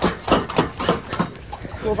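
Quick footsteps of several people running along a hard corridor floor, about three or four steps a second, with a shouted "Go" near the end.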